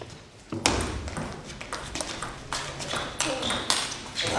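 A table tennis rally: the ball clicks sharply, again and again, off the players' bats and the table, starting about half a second in and going on in quick succession.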